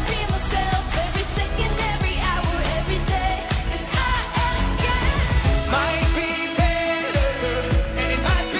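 A dance-pop song sung by a woman over a steady electronic beat.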